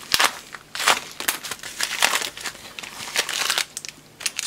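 Plastic mailer packaging crinkling as it is opened and handled by hand, a run of irregular crackles.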